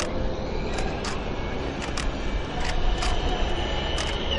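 Camera shutters clicking at irregular intervals, about two a second, over a steady low rumble of outdoor ambience. A faint high steady tone comes in about halfway through.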